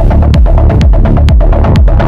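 Melodic techno playing at full volume: a steady kick-drum beat, about two beats a second, over a deep bass and held synth tones.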